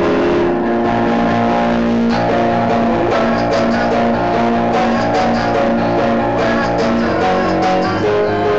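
Instrumental passage of live music on an electronic keyboard, with a steadily repeated low note and no singing.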